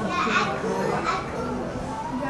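Indistinct voices of people talking, with a child's voice among them; no words are made out.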